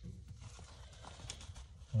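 Faint, light taps and handling noises from a small paintbrush being worked at a workbench, over a low steady hum.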